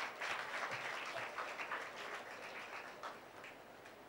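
Applause: many hands clapping, dying away near the end.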